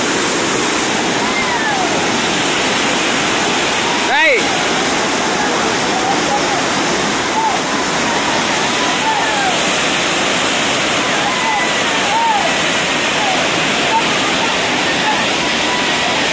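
Waterfall in full spate with rainy-season floodwater, a loud, steady rush of falling water.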